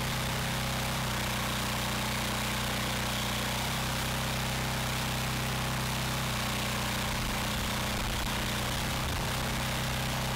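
A 420cc, 15 HP single-cylinder engine on a log splitter running steadily, driving an oversized 28 GPM two-stage hydraulic pump.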